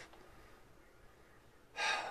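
A man's short, sharp intake of breath near the end, after more than a second of near quiet.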